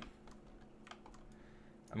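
A few faint, scattered clicks from a computer keyboard and mouse as 3D modelling software is operated.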